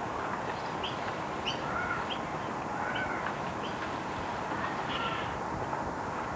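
Birds giving short, repeated calls, several each second, over a steady wash of background noise.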